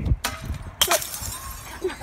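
A fluorescent light tube shattering: a sharp crash about a quarter second in, a second crash just before one second, then a fading hiss of breaking glass.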